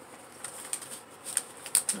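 Aged book paper and packaging rustling in a hand as items are pulled out, a handful of short, crisp crackles, the sharpest near the end.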